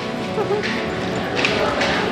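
Hard ski boots clomping on the cable car station floor as a crowd of skiers files out, a few sharp knocks among the steps, with chattering voices and music in the background.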